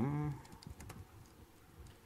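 A few scattered key presses on a laptop keyboard: several light clicks within the first second and another one or two near the end. They follow the tail of a drawn-out spoken 'um'.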